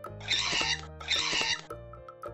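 Two short, harsh pterodactyl-screech sound effects, each about half a second long, the second coming about a second in, over light plucked background music.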